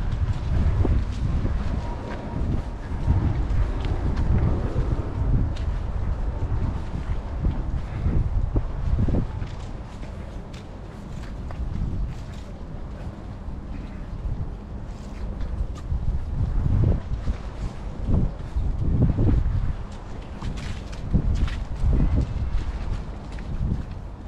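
Wind buffeting the microphone: a low rumble that swells and drops in uneven gusts.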